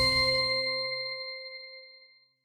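The closing hit of an electronic outro jingle ringing out: a bell-like chime over a deep boom, dying away. The boom fades within the first second and the chime near the end.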